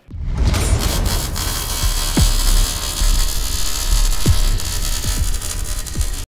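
Cinematic logo-sting sound design: a loud, low rumbling drone thick with hiss, with falling-pitch sweeps dropping into the rumble, the clearest about two seconds in and again about four seconds in.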